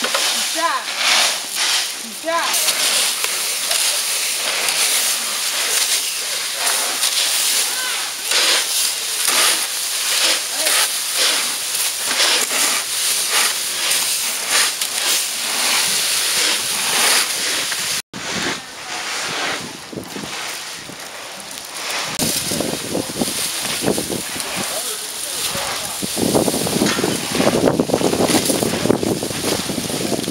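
Rakes scraping and crackling through dry fallen leaves on pavement in quick, irregular strokes, with wind on the microphone.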